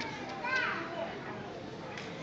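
Young children's voices chattering in a large hall, with one high child's voice calling out about half a second in, its pitch rising then falling.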